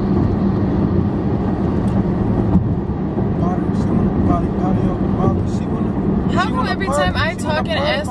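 Road and engine noise of a moving car heard from inside the cabin: a steady low drone with a constant hum, with talking starting near the end.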